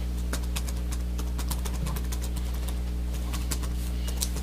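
Steady low electrical hum on the recording, with irregular light clicks and taps from handling things at the meeting table.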